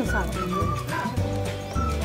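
Background music: held melody notes over a low bass line.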